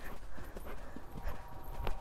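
Pony's hooves cantering on a wet sand arena, a series of soft, irregular hoofbeats.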